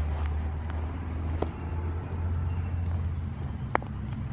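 Wind rumbling steadily on the camera microphone outdoors, with a couple of faint sharp clicks.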